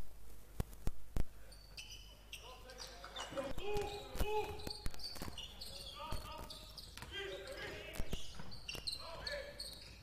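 A basketball bouncing on the hardwood court floor, heard as a series of irregular sharp knocks, with faint voices of players calling out on the court.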